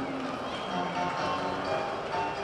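Football stadium ambience: faint music and voices carried over the ground's public-address system, echoing in the open stands.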